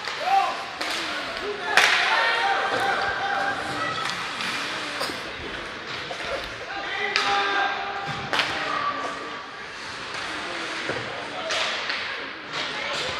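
Ice hockey rink during play: spectators shouting and calling out, echoing in the arena, broken by several sharp knocks of sticks and puck against the ice and boards.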